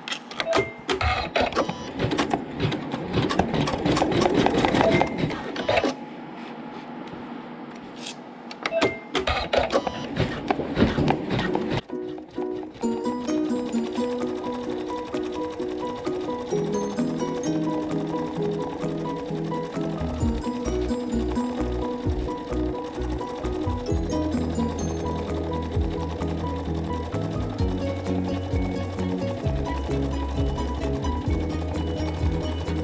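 Computerized embroidery machine stitching a decorative stitch in a rapid run of needle strokes for about six seconds, pausing briefly, then stitching again for a few seconds. From about twelve seconds in, background music with a steady beat takes over.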